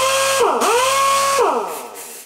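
Air-powered dual-action (DA) sander running free off the compressor line, with a strong hiss of exhaust air. Its whine dips and rises once early on as the trigger is eased, then holds steady at speed and winds down near the end as the trigger is released.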